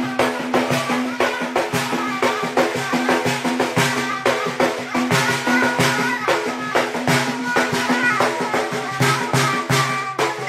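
Folk music with a frame drum (bendir) beaten in a fast, even rhythm over a steady droning tone.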